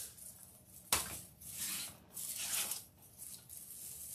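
Deco mesh and raffia rustling and crinkling as a wreath is turned over and handled, with a sudden knock about a second in.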